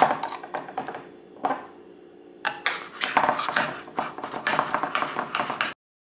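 Kitchenware clinking and knocking on a stone countertop: a few clicks at first, then a quick run of small clinks in the second half, cutting off suddenly near the end.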